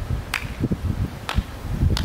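Wind rumbling on an outdoor microphone, with three short sharp clicks, near the start, in the middle and near the end.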